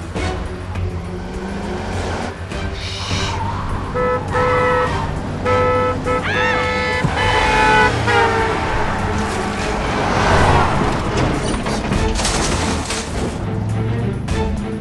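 Car horn sounding in several held blasts between about four and eight seconds in, over a film music score. A broad rushing noise swells after the blasts.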